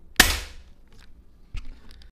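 Air rifle firing a single slug: one sharp crack with a short ringing tail. A much fainter knock follows about a second and a half later.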